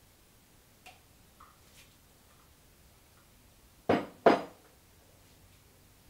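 Stainless steel measuring cups clinking faintly during the pour, then two loud, short sharp knocks close together about four seconds in.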